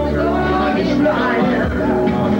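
A pop-rock song with a lead vocal playing steadily as dance music.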